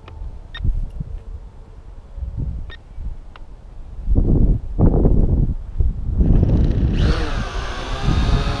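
Syma X8HG quadcopter's brushed motors and propellers spinning up, becoming a loud, steady buzzing whine about seven seconds in as it lifts off.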